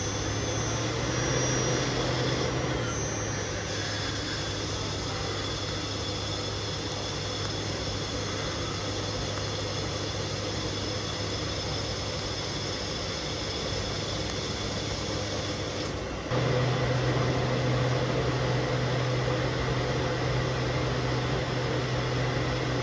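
A CNC lathe making a finish-turning pass, its spindle and drives giving a steady machine hum with faint high whines. About 16 seconds in, the hum steps up in pitch and grows louder.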